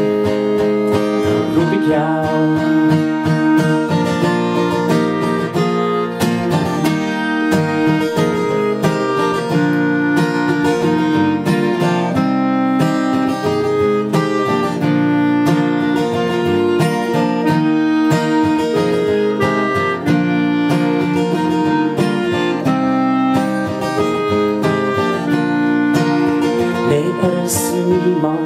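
Acoustic guitar strumming with a clarinet playing the melody in long held notes: an instrumental interlude between sung verses of a song.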